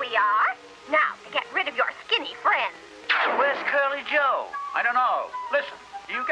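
Cartoon soundtrack: a voice making sounds without clear words over background music.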